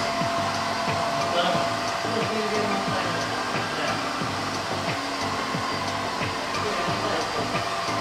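Steady whir of a hair dryer running throughout.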